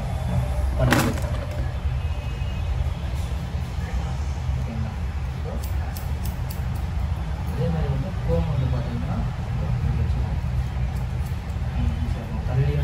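Steady low background rumble with faint voices, over which a barber's scissors snip hair in short clicks, a cluster about six seconds in and a few more near the end. A single sharp click about a second in.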